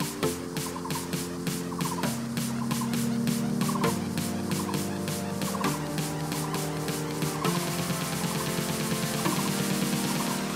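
Background music with a steady quick beat and held chords that change about every two seconds, with a short warbling figure repeating throughout.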